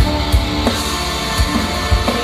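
Rock band and symphony orchestra playing live together: a driving drum-kit beat with distorted guitar over held string chords.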